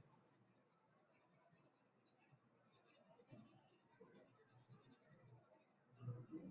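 Felt-tip marker scratching on paper in quick short strokes as a small circle is coloured in, faint, starting a little before halfway through; near silence before that.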